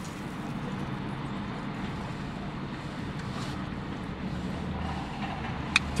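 Steady low hum of a car, heard from inside the cabin.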